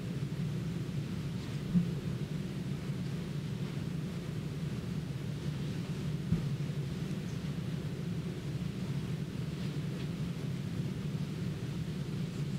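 Steady low room rumble and hum, such as ventilation or equipment noise, with two faint knocks, one about two seconds in and one about six seconds in.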